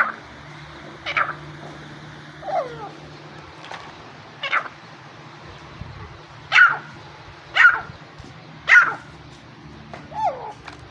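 Irani teetar (partridge) calling: about seven short, sharp calls, each dropping in pitch, roughly one a second, with the loudest three near the end.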